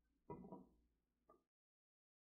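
Near silence: faint room tone with a brief faint sound about a third of a second in and another just after a second, then the sound cuts off to complete silence.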